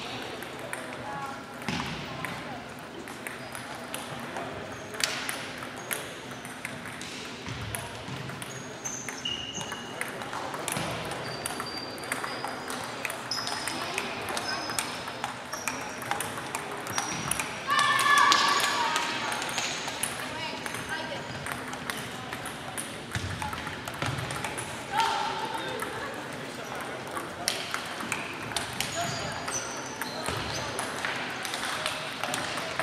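Table tennis balls clicking rapidly and irregularly off bats and tables from several matches played at once in a large sports hall, with players' voices in the background. Brief high squeaks come and go, and a louder call stands out about 18 seconds in.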